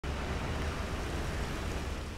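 Steady outdoor background noise: a low rumble under an even hiss.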